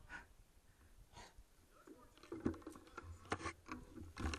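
Bike rattling and knocking over a rough dirt trail, mostly quiet at first, then a dense run of irregular clicks and knocks from about two seconds in, with a few short squeaks.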